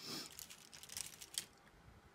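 Makeup brushes being handled and sorted through: light rustling with a few small clicks over the first second and a half, the sharpest click near the end of that stretch.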